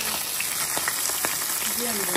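Small whole chimbola fish frying in hot oil in a frying pan: a steady sizzle with scattered sharp pops and crackles.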